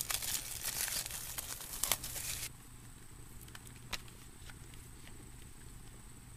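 Plastic shrink wrap crinkling and tearing as it is pulled off a metal CD case, stopping about two and a half seconds in; after that only a few faint clicks.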